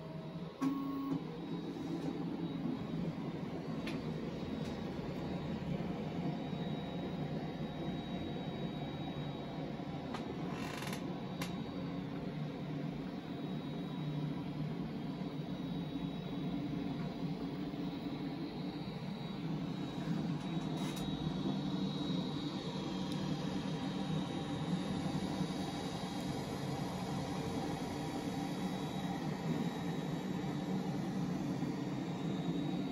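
Tronxy X5SA 3D printer printing at speed: its stepper motors whir in changing pitches as the print head and the Zesty Nimble remote extruder move, over a faint steady high whine. There is a short hiss about a third of the way in.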